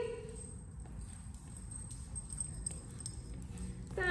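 Faint, irregular clicking footsteps of a small dog and a person walking on a bare concrete floor, over a steady low room hum. A short voiced sound comes right at the start.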